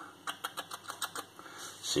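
A quick, irregular run of light clicks and taps, about half a dozen a second, ending in a short word.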